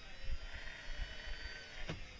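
Small DC electric motor spinning on power from the solar panels as a confirmation test of the wiring: a faint, steady whine. A click comes near the end.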